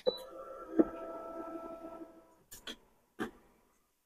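HTVRont auto heat press opening at the end of its cycle. A click and a brief high tone are followed by a knock, then about two seconds of steady motor whine as the top platen lifts and the lower plate slides out. A few light clicks follow.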